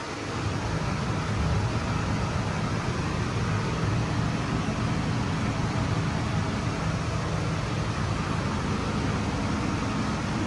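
Air conditioning running inside an enclosed Ferris wheel gondola: a steady, deep rushing hum that holds even throughout.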